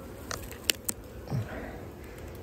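A few short, sharp clicks and light handling noises from a gloved hand working at the wooden top bars of an open beehive, over a faint steady background.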